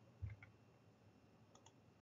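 Near silence broken by a soft low thump about a quarter second in, two faint clicks just after it, and two more faint clicks near the end.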